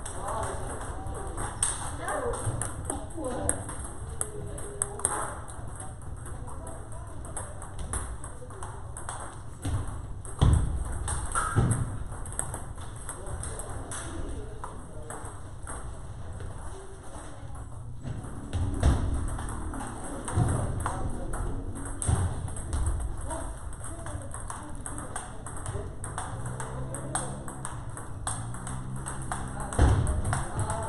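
Table tennis balls being struck by rackets and bouncing on tables: a continual stream of sharp, irregular clicks from several rallies going on at once, with people's voices in the background.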